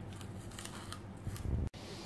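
Polystyrene foam (thermocol) disc being pried out of a steel bowl with a utility-knife blade: faint crackling and scraping of the foam. A dull low knock comes about one and a half seconds in, then the sound cuts off abruptly.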